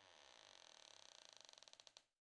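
Near silence: only a very faint creak-like trace sits far below the level of the surrounding speech.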